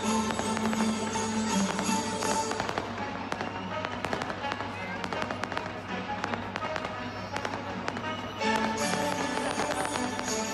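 Fireworks bursting and crackling over loud event music. About three seconds in, the music drops back and a dense run of sharp cracks and pops stands out. The music swells again shortly before the end.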